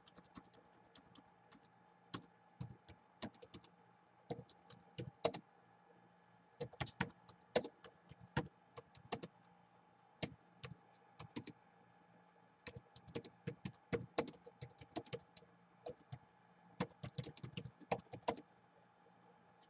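Typing on a Gateway laptop's built-in keyboard: irregular runs of quick key clicks broken by short pauses, over a faint steady hum.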